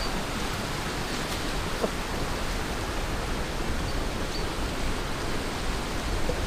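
Steady rushing of a fast, rocky river running in white water.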